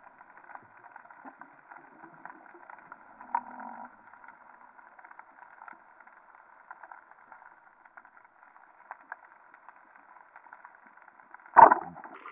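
Underwater sound picked up through a camera's waterproof housing: a steady muffled hiss scattered with faint clicks and crackles, a louder click about three seconds in, and a loud thud near the end.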